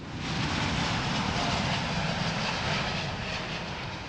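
Jet airliner's engines at takeoff, a steady full rush of noise that swells in at the start and eases off a little near the end.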